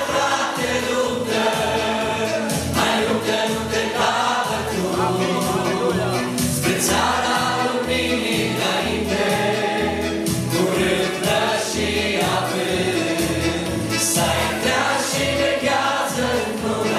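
Live Christian worship song: a man and a woman singing into microphones with backing voices, over band accompaniment with a steady beat.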